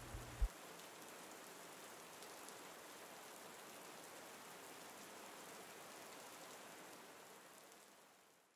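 Faint, steady hiss of heavy rain falling, fading out near the end. A brief click comes just after the start.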